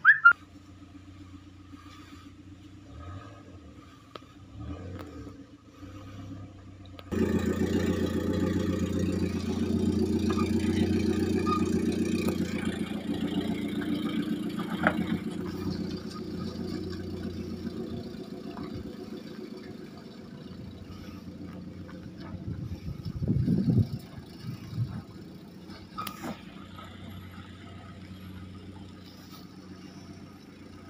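Car engine running as a sedan drives slowly away over a muddy, rocky dirt track. The engine gets suddenly louder about a quarter of the way in, then slowly fades as the car pulls away, with a short louder burst about three-quarters of the way through.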